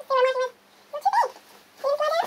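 A dog whining three times in short, high calls, the first held steady and the later two sliding up and down in pitch.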